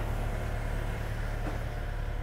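Steady low rumble of airport ramp vehicles and ground equipment engines running, with a faint steady hum above it.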